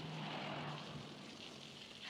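Steady hiss of water running from a garden hose onto a wet concrete path, with a faint low hum in the first half that fades out.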